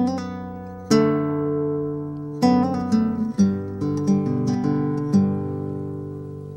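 Acoustic guitar played fingerstyle: plucked bass notes and chords left to ring, about nine attacks in all. A quick hammer-on and pull-off with the index finger comes in the middle.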